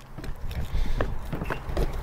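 An egg tapped and cracked one-handed on the rim of a plastic mixing bowl: a few light clicks about a second in, over a low rumble.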